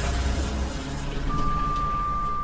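Low rumble and hiss with a single steady high-pitched tone that comes in a little past halfway and holds. This is a sound-effect passage at the close of an electronic music track.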